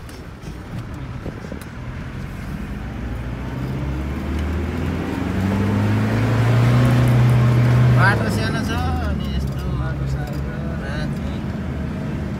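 Vehicle engine heard from inside the cabin, pulling harder and getting louder with a slightly rising note, then dropping away suddenly about eight seconds in as the driver eases off. Voices come in after the drop.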